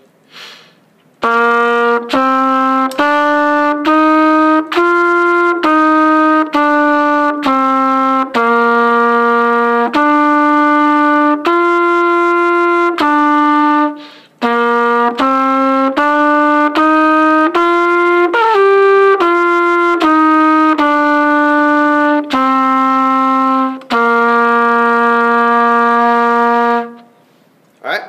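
Trumpet playing a slow exercise line of separate quarter notes that step up and then back down, in two runs with a short break about halfway, ending on a long held note.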